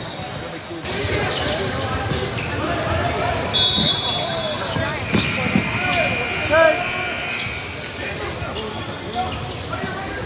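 Basketball game sounds in a gym: the ball bouncing, sneakers squeaking on the hardwood court and players' and spectators' voices. A short, shrill steady tone comes about three and a half seconds in.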